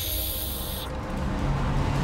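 Portable canned-oxygen spray can hissing into a mouth for under a second, with a thin high whistle in the hiss, then cutting off. Under it run a low rumble and faint background music.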